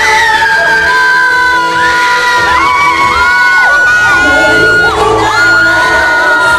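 A crowd of fans screaming and cheering in high, held voices, many at once, over live pop singing and backing music.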